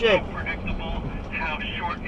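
A person's voice calling out in short, broken bursts, with steady road noise from a moving car underneath.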